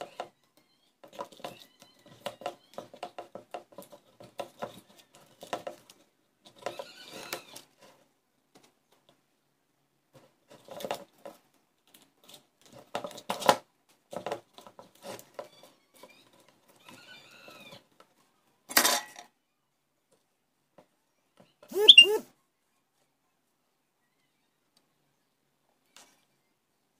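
Light clicks and rattles of wire and small parts being handled and fitted into a small plastic pot, coming in scattered clusters. There is a short burst of noise about two-thirds of the way through and a brief voice-like sound near the end.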